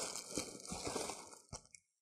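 Plastic packaging crinkling and rustling as hands rummage inside a cardboard box, with a few light knocks. A single sharper click comes about a second and a half in, then the sound cuts off suddenly.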